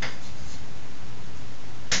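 Chalk tapping against a blackboard twice, once at the start and once near the end, over a steady hiss.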